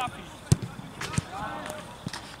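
A football being kicked: a sharp thud about half a second in, the loudest sound here, and a lighter knock a little before the end, with players calling out in the background.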